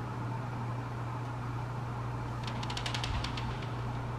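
Steady low background hum of a small room, like a fan or appliance running, with a quick run of about ten faint high clicks about two and a half seconds in.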